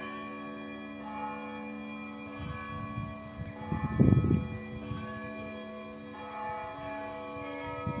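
Russian Orthodox church bells ringing a perezvon, several bells sounding overlapping tones that ring on and die away slowly. A brief low rumble about four seconds in is louder than the bells.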